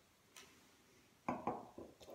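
A stemmed wine glass set down on a table: three or four light, quick knocks about a second and a half in, the glass's foot tapping the tabletop as it settles.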